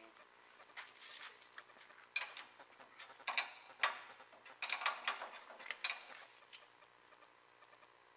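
Irregular clicks and scrapes of a tape measure and hand tool against the steel frame of a slider bed conveyor's belt take-up as it is tightened and measured, over a faint steady shop hum.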